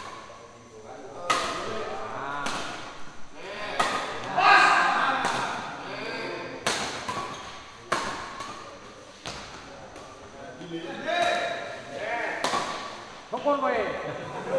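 Badminton rackets striking the shuttlecock in a doubles rally, sharp hits roughly once a second, with players and onlookers shouting and calling between the strokes; the loudest shout comes about four and a half seconds in.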